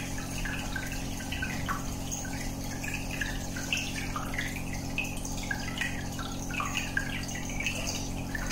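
Aquarium air bubbler: a stream of air bubbles rising through the tank water, a constant irregular patter of small blips and gurgles. A steady low hum sits underneath.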